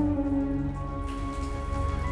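Soft background music score of held, sustained chord tones that change about a second in, over a steady low noise.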